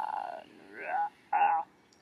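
Felt-tip marker squeaking across paper as a straight line is drawn: one long squeak, then two shorter ones.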